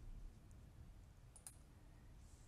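Near silence, with one faint mouse click about one and a half seconds in.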